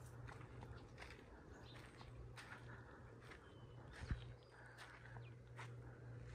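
Near silence outdoors: faint irregular footsteps on a dry dirt road, with a soft thump about four seconds in and a couple of faint, short, high bird chirps over a steady low hum.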